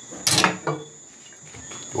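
A short knock and clatter of a kitchen utensil on a wooden cutting board, once about a third of a second in and more faintly just after, as a knife is put down and a glass bottle is taken up.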